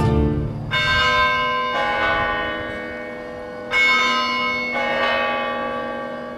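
Church bells struck four times, in two pairs with each pair's strokes about a second apart, each strike ringing on and slowly fading.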